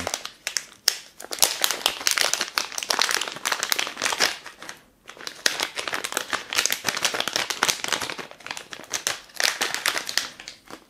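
Silvery plastic bag crinkling and rustling as it is handled and opened by hand to take out a small electronic control box, with a brief pause about halfway.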